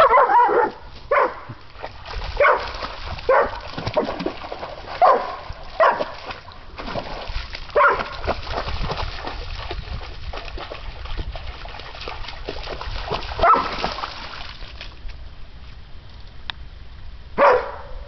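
Young German shepherd barking in short, irregular bursts, about nine barks, with water splashing in a creek through the middle of the stretch.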